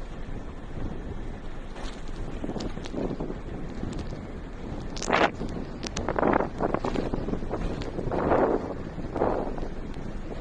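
Wind buffeting a phone's microphone: a steady low rumble, with several louder swells in the second half.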